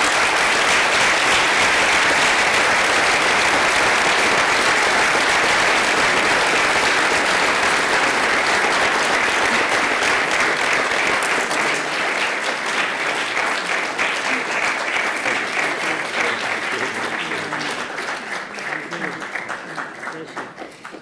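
Audience applauding: a loud burst of clapping that starts at once and holds steady, then thins out toward the end.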